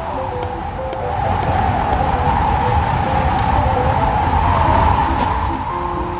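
Gusting wind sound effect: a rushing howl that swells from about a second in and eases near the end, over background music of short notes.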